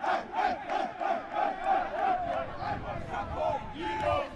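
A group of footballers in a team huddle shouting and chanting together, short repeated shouts in a quick, even rhythm.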